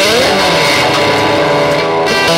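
Guitar music playing steadily, with a sliding rise in pitch right at the start before the notes settle and sustain.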